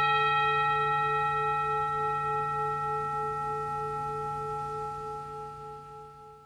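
A single struck bell tone ringing out with several clear overtones and fading slowly, the lowest note pulsing slightly as it decays, over a steady low hum.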